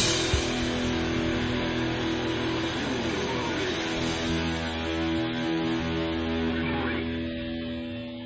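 Live metal band's distorted electric guitars and bass holding ringing chords with no drumbeat, a few sliding notes about three seconds in; the sound begins to fade near the end.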